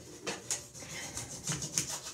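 Plastic hanger scraping a bathtub surface in quick short strokes, rubbing off soap scum and deposits.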